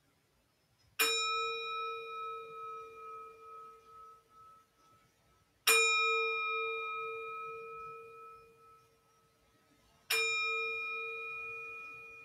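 A bell struck three times, about four to five seconds apart, each stroke ringing clearly and fading slowly over several seconds.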